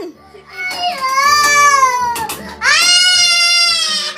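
A person wailing in fright: two long, high-pitched crying cries, the second starting about halfway through and louder.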